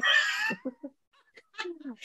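A woman laughing: a high-pitched squeal of laughter that breaks into a few short chuckles and stops, then a brief pause and a soft low vocal sound near the end.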